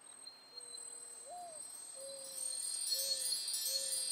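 Cartoon magic-sparkle sound effect: high, shimmering chime and tinkle sounds that build up and grow louder through the second half, with a few faint, soft low notes underneath.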